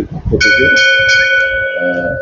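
A bell rings out about half a second in, its several ringing tones fading away over the next two seconds, under a man's talking.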